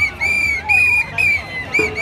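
Whistles blown in a quick series of short blasts, about six in two seconds, each rising and then falling slightly in pitch, over crowd noise.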